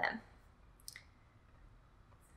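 A single faint click from a laptop about a second in, against quiet room tone.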